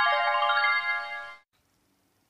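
Short musical sting: a quick descending run of bright pitched notes that ring on together and fade out about a second and a half in. It marks the change from one vocabulary entry to the next.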